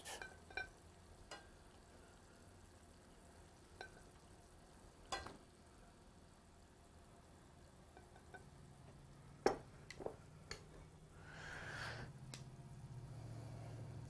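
Quiet kitchen handling: metal tongs lifting cooked wax beans out of a sauté pan onto a plate, giving a few scattered light clicks against the pan and plate.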